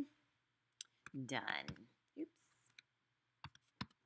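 Keys clicking on a laptop keyboard as a short word is typed: three quick clicks a little before a second in, and three more near the end.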